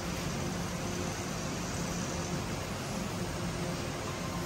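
Steady noise of electric standing fans and air-conditioning units running, with a faint low hum under it.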